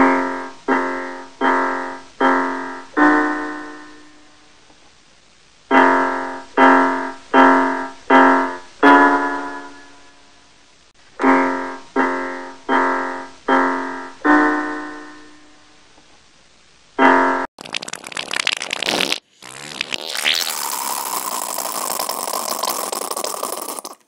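Piano-like keyboard music: three phrases of five repeated notes at one pitch, the last note of each held longer, then a single note. Near the end this gives way to a short noisy burst and then a steady hissing, rushing sound effect.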